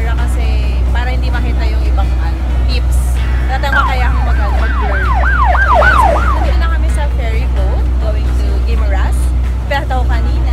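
Ferry engine running with a steady low drone. About four seconds in, a siren-like wail rises and falls about seven times over some three seconds.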